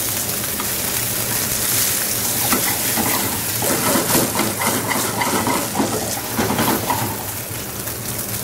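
Sea bass fillets sizzling in hot oil in a frying pan on a gas burner, a steady frying hiss just after the fillets have been flipped, with a steady low hum underneath.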